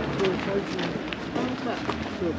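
Outdoor ambience of people's voices talking in snatches nearby, with a few light clicks like footsteps on pavement.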